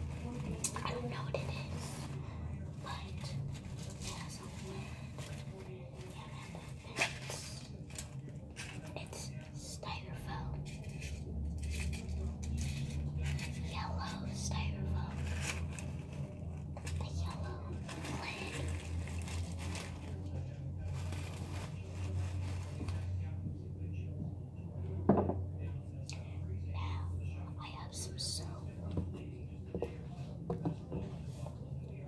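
Fingertips scratching, tapping and rustling the plastic petals and bumpy textured holder of an artificial flower close to the microphone: a run of small clicks and scratches with one sharper knock about 25 seconds in, over a steady low hum.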